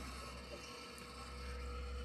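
Faint, steady low hum of workshop background with a faint thin tone, between spoken words; no machining is heard.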